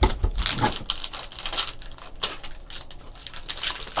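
Foil trading-card pack wrapper being crinkled and torn open by hand, a quick run of crackles and small clicks, with a soft thump at the start.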